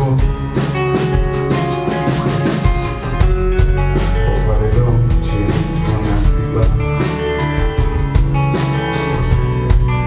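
Live band music: a strummed acoustic guitar with a drum kit keeping the beat.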